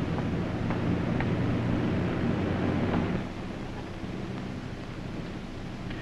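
Steady drone of an airliner's engines and airflow in flight, with a low hum underneath. It drops to a lower level about three seconds in.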